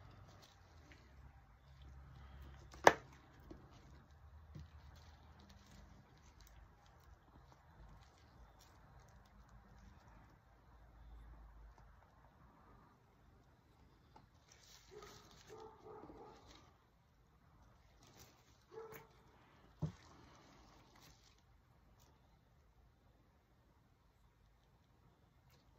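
Faint handling sounds of resin work: plastic mixing cups, a stir stick and silicone molds being moved and set down on a work table. There is one sharp knock about three seconds in and a smaller one near twenty seconds.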